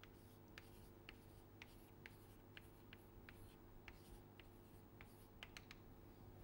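Chalk writing on a blackboard, faint: a series of short, sharp taps and scratches about two a second as the symbols go up, over a low steady hum.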